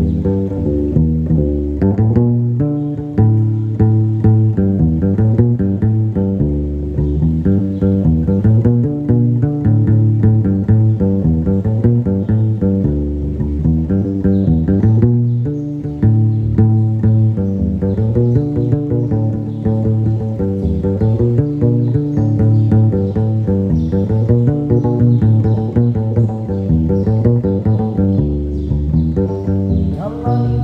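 Gnawa guembri (sintir), a three-stringed bass lute with a skin-covered body, played solo: a fast, repeating plucked bass line of short, snapping notes.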